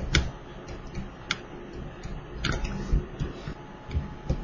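A few sharp clicks, roughly a second apart, from a stylus tapping on a pen tablet while handwriting, over a low background rumble.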